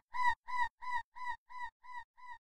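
Electronic dubstep intro: a short pitched synth stab repeating about three times a second, each repeat a little quieter, like a fading echo.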